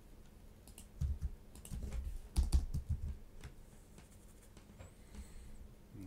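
Computer keyboard keystrokes: a quick irregular run of clicks in the first half, then only a few scattered taps.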